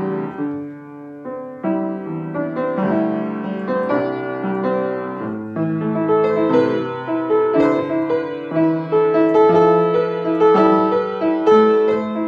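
Kawai grand piano played solo in an improvisation: held chords with a melody over them. The playing eases off briefly about a second in, then grows busier and louder in the second half.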